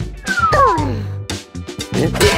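Cartoon background music with a cartoon character's high vocal sound that slides down in pitch about half a second in.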